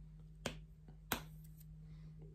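Two short, faint clicks about two-thirds of a second apart as a glass foundation bottle with a metal pump top is handled.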